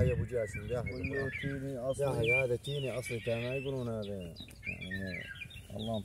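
A man's voice chanting in long, drawn-out, wavering notes, with small birds chirping in the background.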